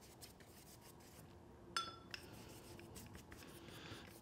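Faint soft rubbing of a round watercolour brush stroking wet paint across paper, with a brief ringing clink a little under two seconds in.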